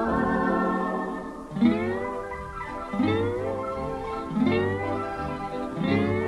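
Instrumental break of a 1935 dance-band record: a guitar plays a melody whose notes slide up into pitch about every second and a half, over sustained chords from a Christie theatre organ.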